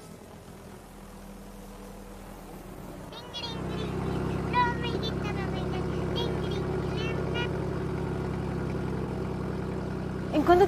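Light single-engine propeller plane's engine running at a steady drone. It is faint at first, then louder and even from about three and a half seconds in, heard from inside the cabin.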